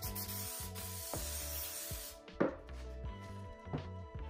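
Aerosol can of CA glue accelerator spraying in a steady hiss for about two seconds, then two knocks of a plywood strip being set down onto the glued base.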